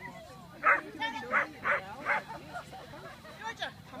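A dog barking: several sharp barks in quick succession in the first half, then one more near the end.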